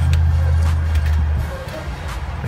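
A steady low hum that drops away about one and a half seconds in.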